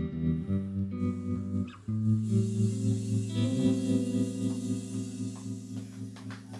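Live blues band playing the closing instrumental bars of a song on electric guitars and bass, ending on a held chord that rings and fades near the end.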